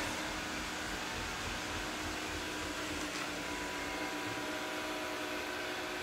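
Ecovacs Deebot N79 robot vacuum running: a steady motor hum with a faint, even whine.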